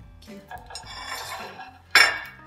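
Ceramic dishes being handled on a stone countertop, ending in one sharp, loud clink of a plate just before the end.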